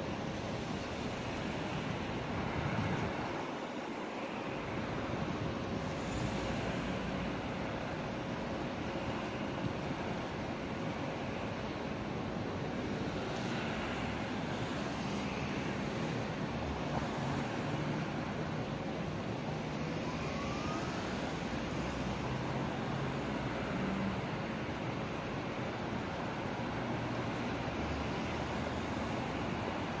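City street traffic at an intersection: cars driving past in a steady, continuous wash of engine and tyre noise.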